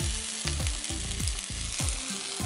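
Chicken pieces sizzling in a hot frying pan, a steady hiss, over background music with a regular thudding beat.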